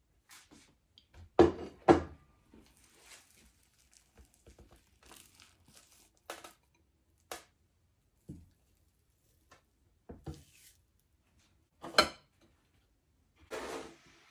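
Scattered knocks, clicks and rustles of tableware being handled as food is dished up, with a few louder knocks: two about a second and a half in, one near 12 seconds and one near the end.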